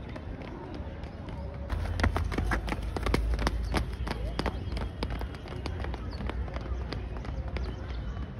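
Footfalls of several sprinters on grass close to a ground-level microphone: rapid, irregular thuds that begin about two seconds in, peak as a runner bounds past the microphone, then thin out as the group moves away.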